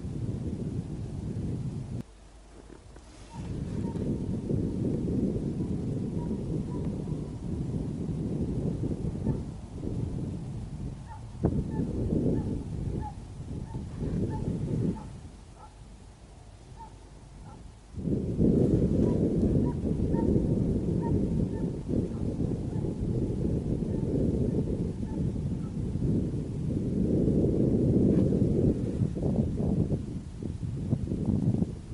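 Russian hounds baying far off, faint short calls repeated about once or twice a second, as they run a hare's trail. A low rumble of wind on the microphone runs over them and drops out twice.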